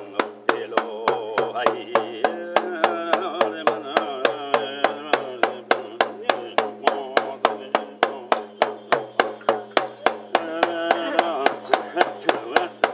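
Small skin frame drum struck with a padded beater in a steady, even beat of about three to four strokes a second. A voice chants over the drumming for the first few seconds and again near the end.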